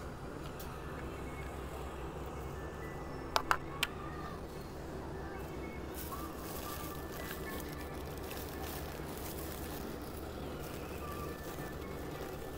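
Two sharp clicks about three and a half seconds in, likely plastic feeding bowls set down on concrete, then a crinkly plastic-bag rustle, over faint steady background music and hum.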